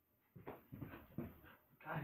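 A dog moving about while chasing a laser dot, making a run of short, irregular noises over about a second and a half, starting about a third of a second in.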